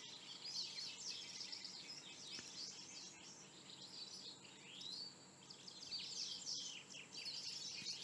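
Faint chorus of small birds chirping, many quick calls overlapping, with a steady high tone underneath.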